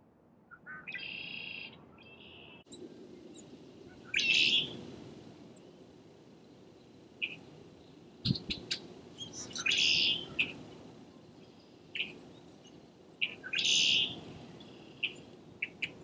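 Songbirds chirping and singing. Short calls come near the start, then a louder song phrase recurs every few seconds, with brief chirps between.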